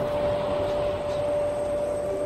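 A steady low rumble under a held mid-pitched tone, with a second, lower tone coming and going.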